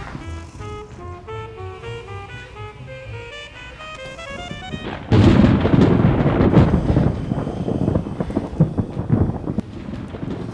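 Light music of short notes in quick runs, broken about halfway by a sudden loud rumble like a thunderclap, which rolls on unevenly for several seconds.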